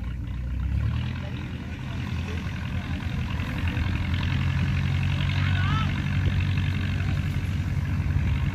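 Massey Ferguson 185 tractor's four-cylinder diesel engine running steadily as it pulls a loaded trailer, growing a little louder a couple of seconds in.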